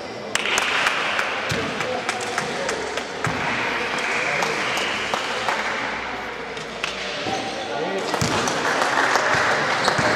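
A basketball bouncing on a wooden gym court, a string of sharp knocks ringing in a large hall, under indistinct voices calling out.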